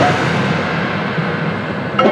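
Marching band holding a loud full-ensemble chord with cymbals crashing, the sound slowly fading.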